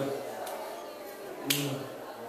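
A signer's sharp clicks, the loudest about one and a half seconds in, each followed by a short low hum from the voice.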